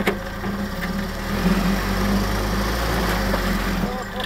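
Willys flat-fender jeep's engine running as the jeep drives slowly through snow, a steady low hum that gets louder about one and a half seconds in.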